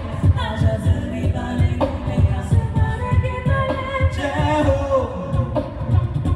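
A group of vocalists singing live into microphones through a sound system, over a quick, steady low thumping beat.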